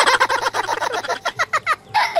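A child laughing hard with his mouth full of food: a quick, cackling string of short bursts.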